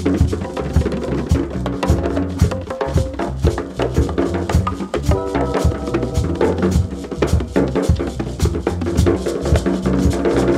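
Spiritual jazz with drums and hand percussion playing a busy, steady rhythm under sustained held notes.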